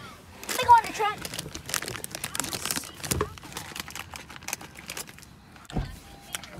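A short bit of voice near the start, then a few seconds of irregular crinkling and rustling clicks, with a low thump near the end.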